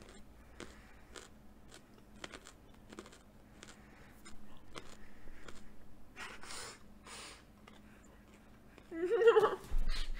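A raw carrot being chewed close to the microphone: a run of small crisp crunches, with two longer hissing sounds about six and seven seconds in and a brief vocal sound near the end. The carrot sounds are very loud on the microphone.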